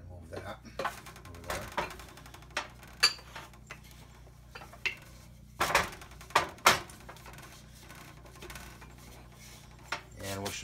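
Wooden rolling pin rolling out pizza dough on a floured wooden board: scattered knocks and short rubbing scrapes as the pin is pushed and lifted, busiest about six to seven seconds in.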